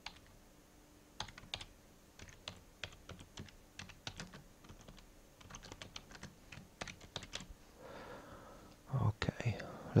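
Computer keyboard typing a short line of text: a run of quiet, irregular keystrokes over several seconds that stops shortly before the end, when a man's voice comes in.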